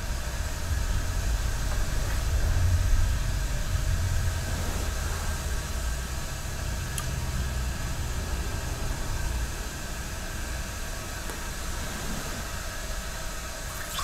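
A steady low rumble under a faint hiss, swelling a little a few seconds in, with one faint click about seven seconds in.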